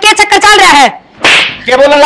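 One slap across a face: a single loud smack about a second and a half in, between spoken lines.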